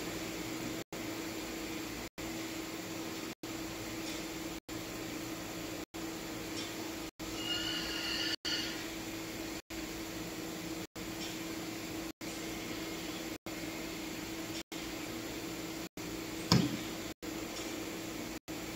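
Steady low room hum and hiss, broken by brief regular dropouts roughly every second and a quarter. A faint short pitched sound comes around the middle, and a single knock near the end.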